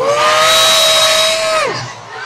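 A horn blows one loud, steady blast for nearly two seconds, its pitch sliding up as it starts and down as it cuts off, with crowd noise underneath.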